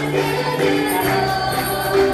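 Live gospel worship music played by a small band, with held bass notes, keyboard chords, a regular jingling percussion beat and voices singing together.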